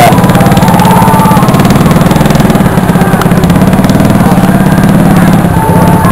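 An engine running steadily close by, loud and even, with a fast, regular pulse.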